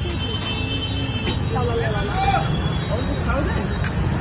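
Steady road-traffic rumble from a busy street, with people talking close by.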